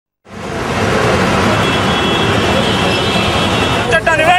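Steady, loud street traffic noise from a busy road, starting abruptly just after the start.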